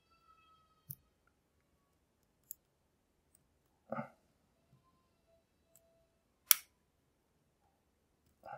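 Faint, separate clicks of a lock pick working the pins of a pin-tumbler lock cylinder: about four sharp clicks spread out, the loudest about six and a half seconds in.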